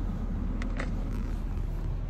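Steady low rumble of a car heard from inside the cabin, with a few faint clicks.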